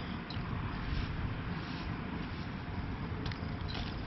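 Steady low background rumble, with a few faint scratches of a hand pushing into gritty perlite potting mix near the end.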